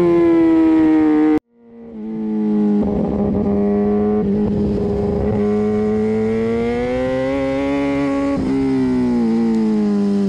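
Motorcycle engine running while riding, its pitch sliding down; the sound cuts out for a moment about a second and a half in, then fades back up and the engine note climbs slowly before easing down again near the end.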